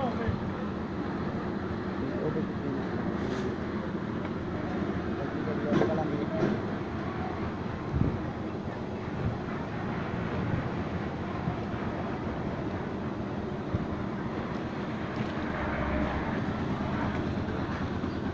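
Steady background noise of a concrete slab pour on a building site, a continuous machine-like rumble with voices now and then, and a couple of brief louder knocks about six and eight seconds in.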